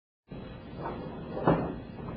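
A single sharp thump about one and a half seconds in, over steady room hiss.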